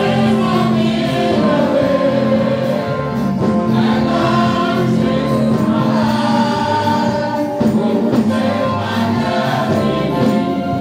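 Gospel music with a choir singing over a steady accompaniment.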